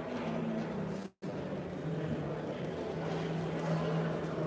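A steady low machine-like hum fills the hall; the sound cuts out completely for a split second about a second in.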